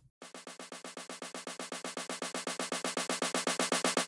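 Sampled snare drum played as a fast roll of evenly spaced hits that get steadily louder: a snare-roll riser, with the sampler's volume set to follow note velocity.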